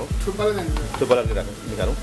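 Noodles deep-frying in a wok of hot oil, sizzling steadily as they are fried crisp, while a metal utensil stirs them in the pan.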